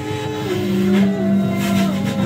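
Live improvised music from a small ensemble: several held notes that step in pitch, with a strong low held tone coming in about half a second in.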